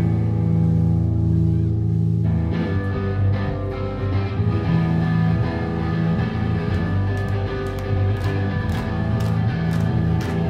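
Live band playing loudly with guitars and bass: a low chord is held for about two seconds, then the band plays on with drum and cymbal hits through the second half.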